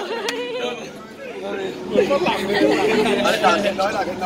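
Several people's voices chattering over one another in Thai, dipping briefly about a second in.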